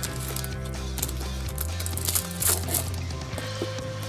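Magic: The Gathering booster pack packaging being torn open, with a few short crackles and crinkles, over steady background music.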